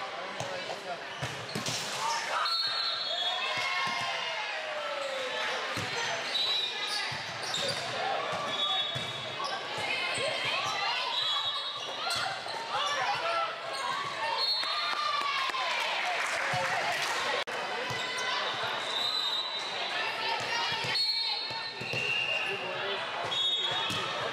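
Volleyball rally in a reverberant gym: the ball being struck and bouncing, sneakers squeaking briefly on the court floor several times, and many voices of players and onlookers calling out and chattering throughout.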